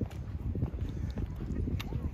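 Footsteps on the wooden planks of a beach boardwalk, an uneven run of low knocks from shoes striking the boards.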